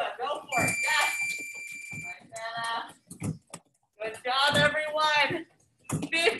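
A steady, high-pitched electronic beep lasting about a second and a half, starting about half a second in, with a person talking around it.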